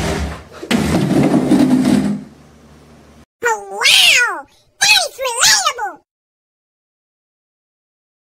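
A cat meowing twice, two loud drawn-out meows about a second each that rise and then fall in pitch, starting about three and a half seconds in. They come after a loud harsh noise in the first two seconds and a faint low hum.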